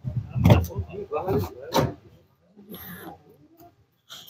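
Minivan sliding door being unlatched by its outside handle and rolled open by hand: a sharp click about half a second in, a rumble as the door runs along its track, and a second knock near two seconds in as it reaches the open stop.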